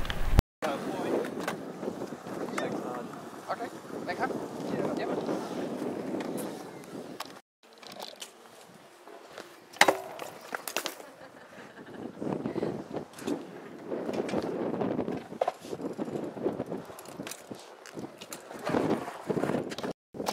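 BMX bike tyres rolling on skatepark concrete, with a few sharp knocks of bikes landing and hitting ramp edges, over people talking in the background.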